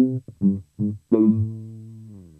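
Electric bass guitar played through a DOD FX25B envelope filter with its range control maxed out. Three short, clipped notes are followed by a last note that is held and left to ring and fade.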